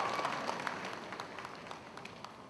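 Audience applause dying away in a large hall, the scattered claps thinning out and fading.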